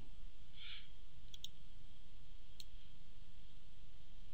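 A few faint, sharp computer clicks, as from a mouse or keyboard, over a steady low hum of room and recording noise.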